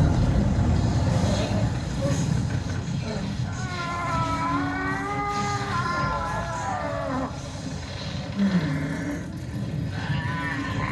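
Cinematic sound effects: a steady, heavy low rumble, with a man's long strained shout in the middle as crackling lightning builds, and a shorter grunt near the end.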